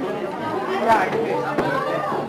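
Overlapping chatter of many guests talking at once in a room, no single voice standing out.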